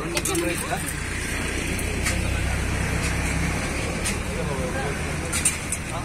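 Low rumble of a passing road vehicle that fades about three and a half seconds in, under background chatter, with a few sharp clinks of steel serving spoons against steel pots.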